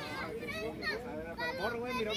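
Several voices chattering at once in the background, some of them high-pitched like children's.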